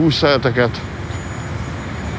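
Steady street traffic noise, an even hum of passing cars, after a man's voice stops less than a second in.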